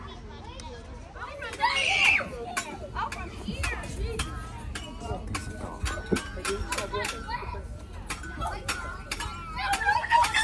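Children playing and calling out at a playground, with a loud high shout about two seconds in. Many small sharp clicks sound over a low rumble.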